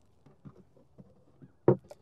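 A beehive's outer cover being lowered into place on the hive box: a few faint taps, then one sharp knock as it seats, with a light click just after, near the end.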